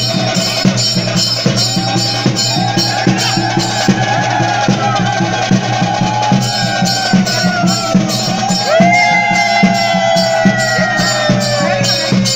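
Live festival percussion music: steady, fast drumming with regular cymbal strokes about four a second, over which a wind instrument holds long notes that droop in pitch at their ends, the loudest note entering about nine seconds in.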